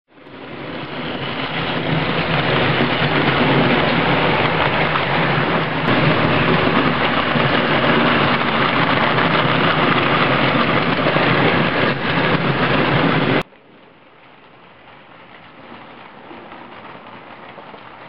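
Model train running along the track close to the microphone: a loud, steady rumble of wheels and motor that builds over the first two seconds and cuts off abruptly about thirteen seconds in. After that, a model steam locomotive runs much more quietly, growing a little louder as it approaches.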